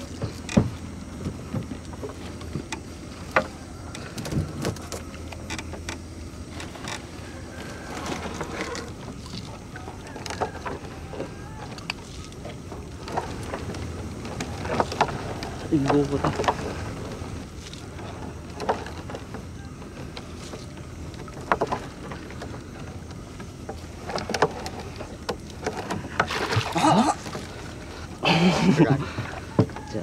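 Gill net being hauled by hand over the side of a wooden boat: water splashing and dripping off the mesh, with irregular knocks and clicks as net and floats come aboard, over a steady low hum.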